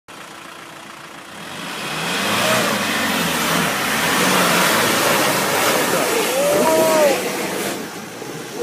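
A 4x4 off-road vehicle's engine revs up and is held under hard load as the vehicle climbs a muddy slope, with dense noise from its tyres churning mud. The sound swells about two seconds in and stays loud until just before the end. A voice calls out briefly near the end.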